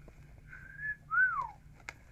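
A man whistling two notes in admiration: a short level note, then a louder one that lifts briefly and slides down. A small click comes near the end.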